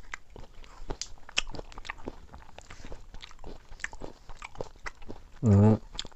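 Close-up eating sounds of two people eating soft milk rice pudding with their fingers: a string of small wet lip smacks and chewing clicks. A brief voice sounds near the end.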